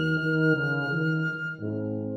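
Classical chamber music with flute, a waltz movement. A high flute note is held over shifting lower parts, and a new chord enters about one and a half seconds in.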